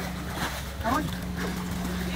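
Faint voices of people calling out briefly, over a steady low hum and a wash of background noise.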